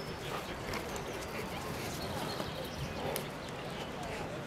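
Footsteps on grass and dry leaves, a few in the first second before they stop, over a spectator crowd murmuring in the background.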